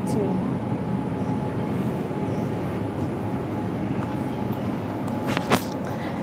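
Shopping cart rolling across a store floor: the steady noise of its wheels, with a couple of sharp clicks a little after five seconds in.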